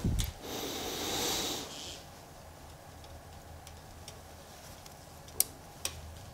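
A noisy breath out lasting about a second and a half, then quiet room tone broken by two short sharp clicks near the end, the first of them the loudest sound.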